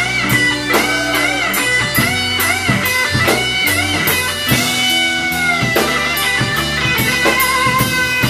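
Live blues band playing: an electric guitar leads with bent, wavering notes over bass and drums, with no singing.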